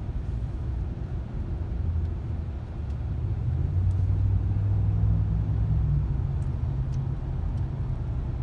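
Low rumble of slow highway traffic heard from inside a car cabin, with a semi-truck running alongside. It swells for a couple of seconds in the middle, then eases slightly.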